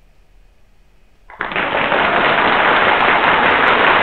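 Microsoft PowerPoint's built-in applause sound effect playing with a slide animation: steady recorded clapping that starts about a second in and carries on, loud and dull, with no crisp high end.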